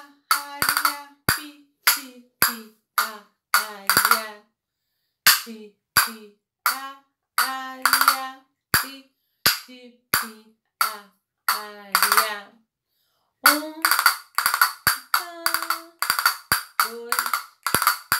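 A pair of castanets (palillos) played in a Fandango de Huelva exercise in three-beat time: sharp single clicks alternate with quick rolls (carretillas). There are brief pauses about four seconds and twelve seconds in, then a denser run of strokes near the end.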